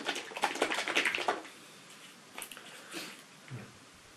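A small bottle of silver-plating solution being handled and shaken. There is a quick run of rattling clicks in the first second and a half, then a few faint clicks from the bottle and its cap as solution is dabbed onto cotton wool.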